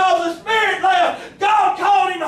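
A man's voice shouting at a high pitch in short, impassioned phrases that break off every half second to a second, typical of an ecstatic Pentecostal preaching cadence.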